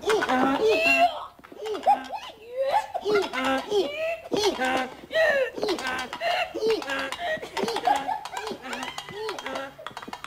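A voice making repeated wordless sounds, short rising-and-falling cries about twice a second.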